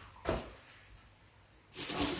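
A single short knock about a quarter second in, then rustling near the end as items are handled in a box of packed supplies.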